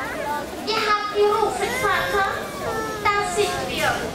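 Young children's voices, high-pitched calls and chatter from an audience of children.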